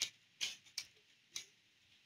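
Four short, sharp clicks, unevenly spaced over about a second and a half, from clicking at the computer.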